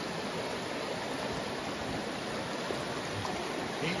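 Small mountain creek running over rocks: a steady rush of water from a shallow riffle.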